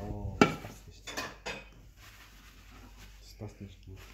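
A ceramic dish clattering against a stainless-steel counter: one sharp clink about half a second in, then a few lighter knocks.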